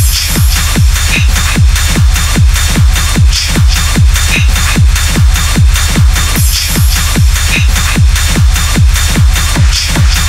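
Hard techno track at 150 BPM: a kick drum on every beat, each hit dropping in pitch, about two and a half a second, under a dense layer of hi-hats and noise.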